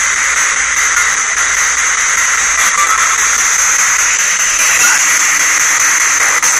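Ghost box (spirit box) radio sweeping across stations, giving loud, steady radio static hiss.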